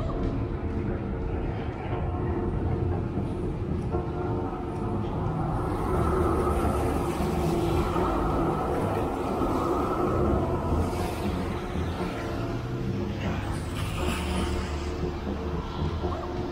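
A tram on wet street rails, its running noise building and swelling from about six seconds in.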